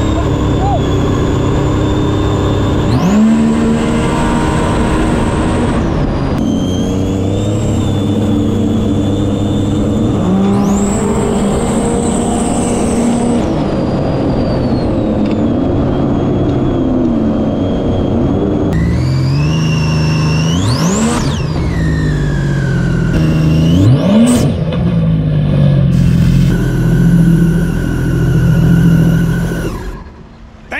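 Supercharged Sea-Doo RXP jet ski running at full throttle, its engine pitch climbing sharply several times as it revs up, with a high supercharger whine riding above the engine note and spray hiss beneath. About two-thirds through a steep rising whine sweeps up high, and the sound changes abruptly a few times before dropping off right at the end.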